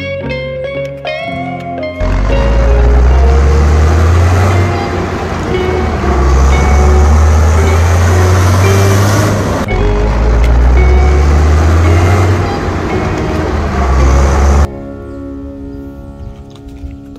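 Loud motor-vehicle engine sound, its low pitch rising and falling as if revving, over children's background music. It starts about two seconds in and cuts off near the end, leaving the music.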